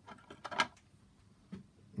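A few short, faint clicks and rustles, clustered about half a second in and once more past the middle, like a handheld camera being moved.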